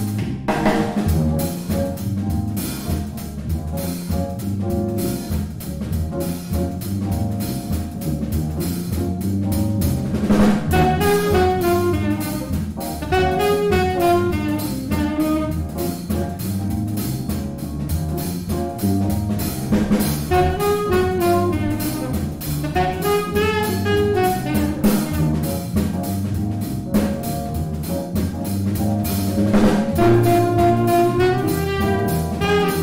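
Brass band playing a funky pop tune: a sousaphone bass line over a drum-kit groove, with saxophones and trumpet coming in with melody phrases about ten seconds in and dropping out again near the end.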